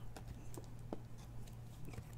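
A few faint clicks and light rustles of trading cards being handled, over a steady low electrical hum.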